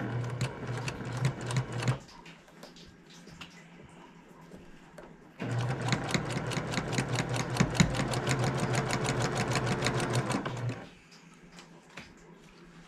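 Electric sewing machine stitching quilt squares fed through one after another: a short burst of about two seconds, a pause, then a steady run of about five seconds of rapid, even stitching over the motor's hum.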